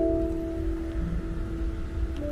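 Slow, relaxing piano background music, a few long held notes changing about once a second, over a low steady rumble.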